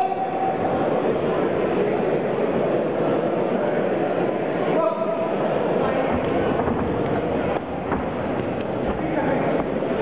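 Spectators at an amateur boxing bout shouting and calling out together in a continuous din of many voices, with one shout standing out about five seconds in.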